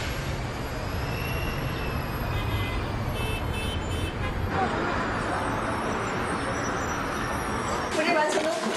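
City road traffic: a steady low rumble of passing cars and buses. About halfway through it gives way to a lighter, even outdoor hubbub.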